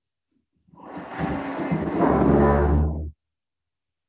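A chair being dragged across the floor: a low, juddering scrape with a steady drone that starts about a second in, grows louder and stops suddenly.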